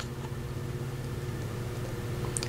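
A steady low hum with several fixed tones, even throughout, with no distinct sounds over it.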